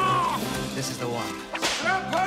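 Film-trailer soundtrack: the tail of a long held cry fades out in the first half-second under music, then a single sudden sharp crack comes near the end.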